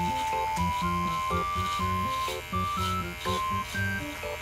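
Background music: a light tune with a melody of short stepped notes over a regular beat.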